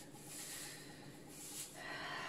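Faint crinkle and rustle of thin plastic disposable gloves being handled.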